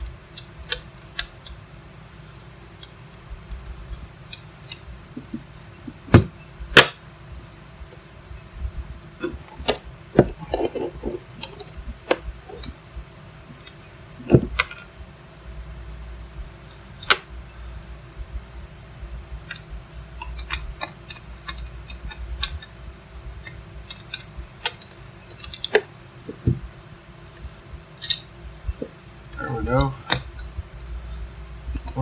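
Screwdriver and plastic plug parts being handled on a workbench while a generator cord plug is wired: scattered small clicks, taps and rubs, with a few louder sharp knocks about six and seven seconds in and again about halfway through.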